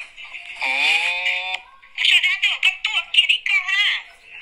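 A person talking, with one long drawn-out word about a second in; the voice sounds thin, as over a phone line.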